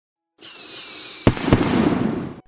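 Firework sound effect for a logo intro. A high whistle slides slightly down in pitch for about a second, then two sharp bangs come in quick succession, followed by a crackling hiss that fades away.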